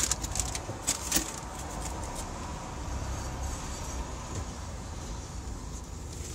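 A paper bag crinkling a few times in the first second, then a vehicle's engine and road rumble inside the cab as it pulls away.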